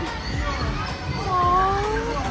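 Feet bouncing on trampoline mats: repeated dull low thumps. An exclaimed 'Oh!' and a laugh come at the start, and a long, slightly rising voice-like note near the end is the loudest sound.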